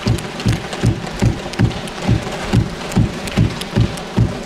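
Parliament members thumping their wooden desks in approval: a steady beat of about two and a half heavy thumps a second over a dense patter of scattered thumping.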